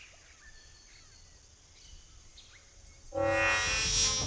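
Faint outdoor ambience with a few soft bird chirps, then a loud film music sting with a bright hissing whoosh cuts in suddenly about three seconds in.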